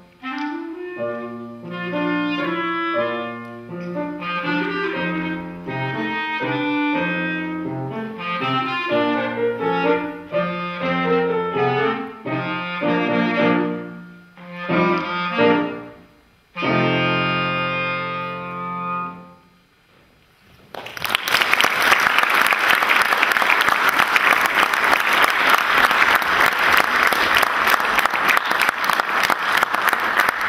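Solo clarinet with grand piano accompaniment playing the closing bars of a tango, ending on a long held chord. After a second or two of quiet, audience applause starts and keeps going.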